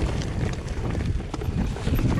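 Wind buffeting the microphone and mountain-bike tyres rolling over a rocky gravel trail, with scattered short clicks and rattles from the bike as it goes over stones.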